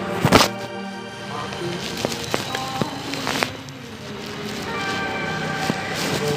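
Background music with steady sustained notes. A single loud knock comes about a third of a second in.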